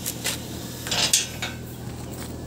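Car door handle and latch being worked: a few sharp metallic clicks, then a louder clatter about a second in.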